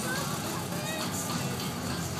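Small engine of a BMW Isetta bubble car pulling away slowly, with crowd chatter and background music.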